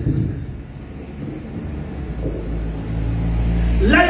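A low, steady rumble that grows louder over the last couple of seconds.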